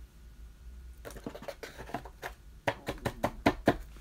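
Baseball cards being handled: a run of short sharp clicks and taps starting about a second in and coming faster and louder near the end.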